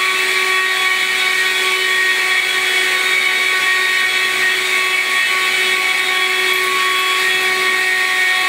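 Stick vacuum cleaner running steadily, a constant motor whine with several high, steady tones over a hiss of rushing air.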